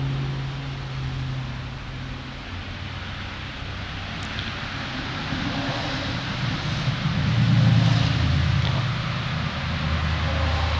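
A steady low motor hum under a background hiss, like a nearby engine running, swelling louder about three-quarters of the way through.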